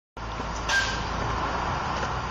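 Street ambience: a steady rumble of traffic and city noise. A short, louder noise with a brief high squeak comes about two-thirds of a second in.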